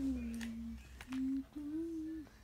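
A child humming a few held notes: one note falling in pitch, then two short higher notes, with a couple of light clicks between them.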